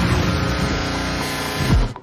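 Loud sustained trailer sound-design hit over the title card: a dense, steady drone of many stacked tones over noise that cuts off abruptly near the end.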